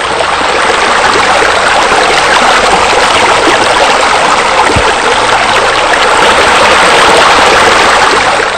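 Loud, steady rush of falling water, as of a raised spa spilling over into a pool, swelling up at the start.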